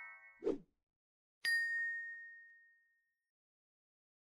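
End-screen subscribe-animation sound effects: a brief pop about half a second in, then a single bright bell ding about a second and a half in that rings out and fades away.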